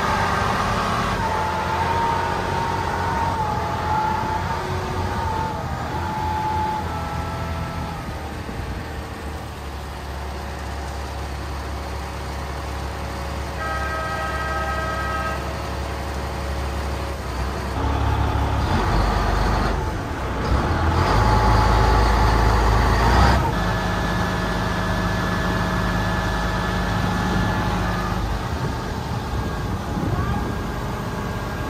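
Chao Phraya express boat's engine running steadily under way, with the rush of its wake water and wind alongside. The engine grows louder for several seconds a little past the middle, and a brief steady tone sounds near the middle.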